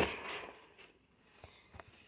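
Cardboard-and-plastic action figure box handled: a sharp tap at the start, then a brief rustle of the plastic window that fades within about half a second, and a couple of faint ticks later.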